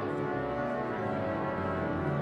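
The Wanamaker pipe organ playing full sustained chords, many steady notes sounding together.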